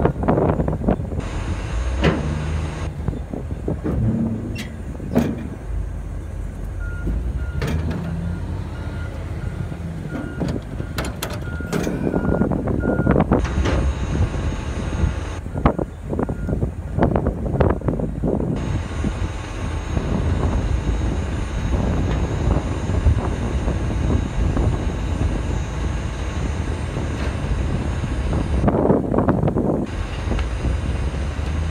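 A heavy machine's engine runs steadily while its backup alarm beeps in an even series for about six seconds, starting some seven seconds in. Scattered knocks and clatter are heard over the engine.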